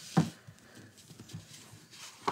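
Hands handling a folded cardstock card on a tabletop: one short soft knock a fraction of a second in, then faint scattered paper and handling sounds.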